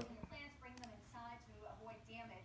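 Faint background talk, a woman's voice among it, with a pair of light clicks a little under a second in.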